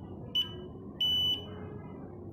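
HF4000 Plus fingerprint scanner's buzzer beeping as a finger rests on the optical sensor while a fingerprint template enrolls. There is a short high beep, then a longer one about a second in.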